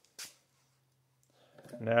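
A single light click about a quarter second in, followed by a faint steady low hum; a man's voice begins near the end.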